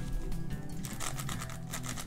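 Magnetic 5x5 speed cube being turned by hand: a fast run of light plastic clicks and scrapes from its layers, over steady background music.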